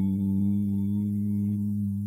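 A single low note held steady with its overtones, the sustained opening of a punk rock record just before the full band comes in.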